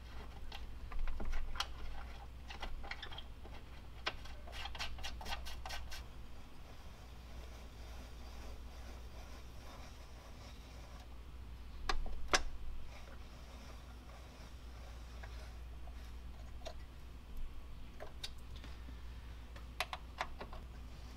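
Small metal clicks and taps of screws, an Allen key and fittings being handled and turned on an aluminum radiator shroud as Allen-head screws are threaded into rubber grommets. The clicks come in quick clusters near the start, with two sharper knocks about midway and scattered ticks after, over a steady low hum.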